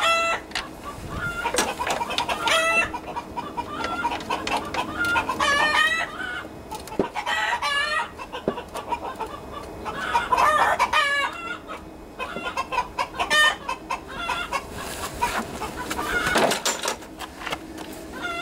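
Birds calling in repeated clusters of short, pitched calls, with two light clicks about seven seconds in and a second and a half later.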